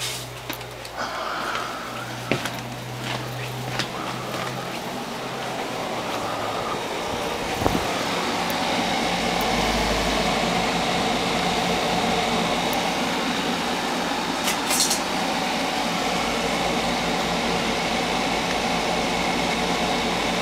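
Steady whir of a running fan-cooled machine, growing louder about eight seconds in and then holding even, with a low electrical hum and a few handling clicks in the first seconds.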